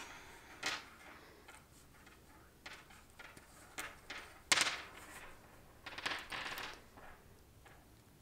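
Faint clicks and scrapes of a tapestry needle against a wooden knitting needle as chunky yarn stitches are slid off onto it, with yarn rustling. The loudest scrape comes about halfway through, and a short run of them follows a little later.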